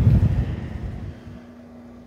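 Low, gusty rumble of wind buffeting the microphone outdoors, loudest at the start and dying away about a second in. It leaves a faint steady hum.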